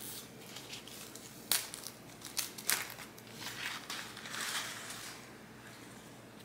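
A paper wrapping sleeve crinkling and rustling as it is unrolled by hand from a plant. There are a few sharp crackles about a second and a half in and again shortly after, then a busier rustle before it settles.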